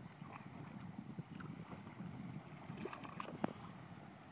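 Faint, irregular water splashing and small knocks from a hooked fish thrashing at the surface beside a boat as it is reeled in, with a few sharper splashes about three seconds in.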